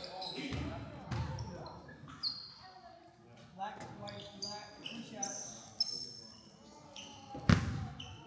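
Sneakers squeaking briefly on a hardwood gym floor with indistinct voices in a large, echoing hall, and a single loud basketball bounce near the end.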